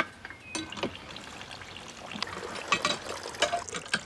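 Freshly pressed apple and pear juice trickling, with a few light clicks in the second half.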